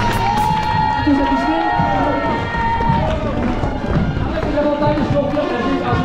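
Spectators along a race's finish straight cheering and clapping, mixed with music and a voice over the loudspeakers.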